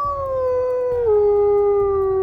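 A white wolf howling: one long, slowly falling howl that drops suddenly to a lower pitch about a second in and then holds steady.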